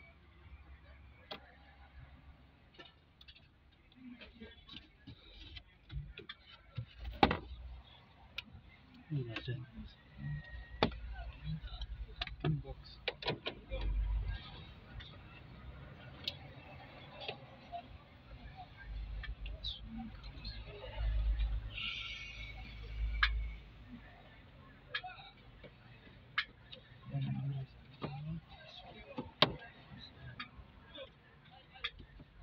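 Scattered clicks and knocks of hands and a hand tool working on the bare plastic dashboard frame and its wiring, with a few low rumbling bumps between them.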